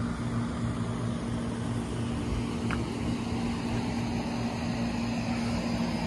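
Outdoor air-conditioner condenser unit running, a steady low hum from the compressor under the whoosh of its fan.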